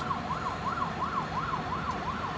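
A siren on a fast yelp, its tone rising and falling about three times a second.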